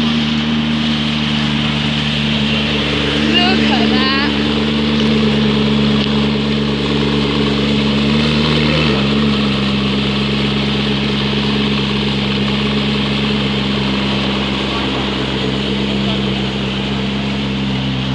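McLaren P1's twin-turbocharged V8 idling steadily, its idle dropping a step lower in pitch about nine seconds in.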